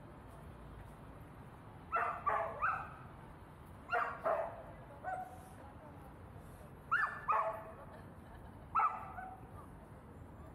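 A dog barking, about nine short sharp barks in loose groups of two or three, starting about two seconds in and ending near the end.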